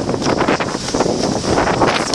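Wind buffeting the microphone, a loud, uneven rushing that comes in irregular gusts.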